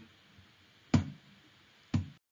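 Near-silent room tone broken by two short, sharp clicks about a second apart, the second at the very end.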